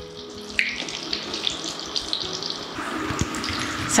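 Batter-coated green chillies (mirchi bajji) deep-frying in hot oil: a steady, even bubbling sizzle.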